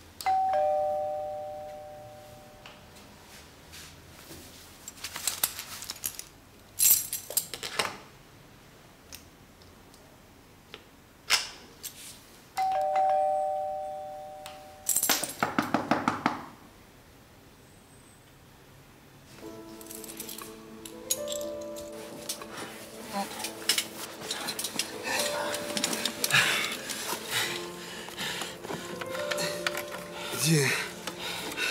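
Electronic two-note doorbell chime, a descending ding-dong that fades over about two seconds, rung twice about twelve seconds apart, with a few sharp knocks between the rings. Soft background music with sustained tones comes in about two-thirds of the way through.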